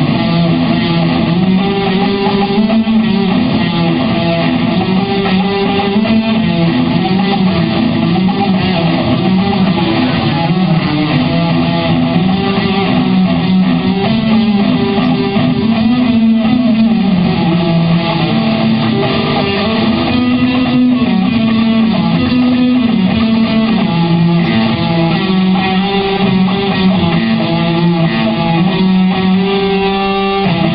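Electric guitar playing a continuous melodic piece at a steady, loud level.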